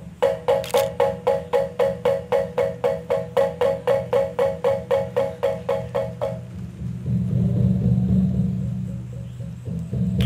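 Balinese gamelan music: small bronze kettle gongs struck with mallets in a fast, even pulse of about four strokes a second on one pitch for about six seconds. Then a lower, denser, sustained ensemble sound swells in, with a sharp strike near the end.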